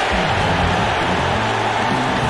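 Music from a radio advertisement: held low notes that step in pitch under a steady rushing noise.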